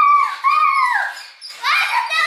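A young girl's high-pitched squealing whoops, two drawn-out calls in a row, the second sliding down in pitch.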